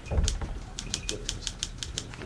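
China cup rattling on its saucer in trembling hands: a quick, uneven run of light clinks, several a second. It is the sign of nervous shaking.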